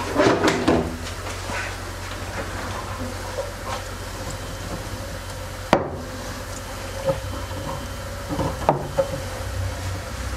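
Handling noises of a hose being fitted over the rim of a glass aquarium: scattered knocks and clicks, the sharpest about six seconds in and another near nine seconds, over a steady low hum.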